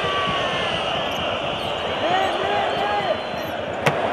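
Basketball arena crowd noise with sneakers squeaking on the hardwood court about two to three seconds in, and one sharp bang near the end as a shot hits the rim.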